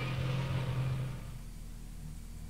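Engine rumble sound effect for a tank: a steady low drone that fades away about a second in, leaving a faint low hum.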